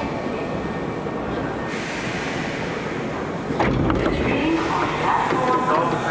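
Hankyu 7300-series commuter train running slowly into an underground station and coming to a stop. A sudden louder burst of noise comes about three and a half seconds in.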